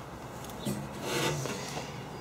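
Faint rubbing and scraping handling noise as items are moved around by hand, with a brief low murmur of voice about two-thirds of a second in.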